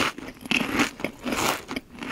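A mouth chewing green grapes soaked in lime juice: a run of close, wet crunches, about every half second.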